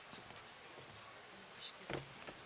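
Low stage background noise with faint rustles and a soft thump near the end.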